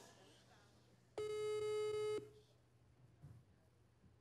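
Outgoing phone call ringing over a mobile phone's speakerphone: a single steady one-second beep of the ringback tone, meaning the call is ringing and has not been answered.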